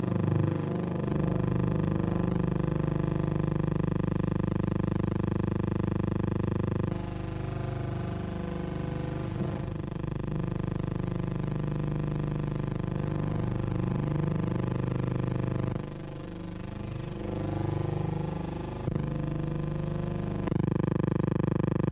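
Military vehicle engines running in a steady drone. The sound changes abruptly about seven seconds in and again near sixteen seconds.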